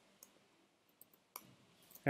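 Faint computer keyboard keystrokes over near silence: a handful of isolated clicks, the clearest about one and a half seconds in.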